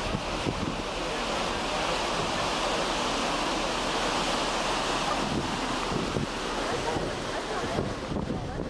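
Ship's wake churning behind the stern, a steady rushing hiss of foaming water, with wind buffeting the microphone.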